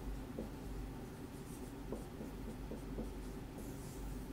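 Dry-erase marker writing on a whiteboard, a run of short, faint strokes and light taps as letters are written.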